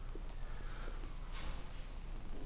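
Two short breathy sniffs or puffs of breath close to the microphone, over a low steady rumble.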